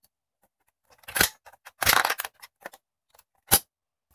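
Plastic clicks and rattles as the lid of a battery charger is opened and AA batteries are pulled from their spring contacts: a short burst about a second in, a longer one around two seconds with a few small ticks after it, and one sharp click near the end.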